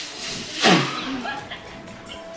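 A foil balloon being blown up by mouth: breath pushed into the neck with the foil crinkling. About two-thirds of a second in comes a loud, short sound that falls steeply in pitch.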